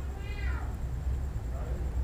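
A single short high call, about half a second long, falling in pitch, over a steady low hum.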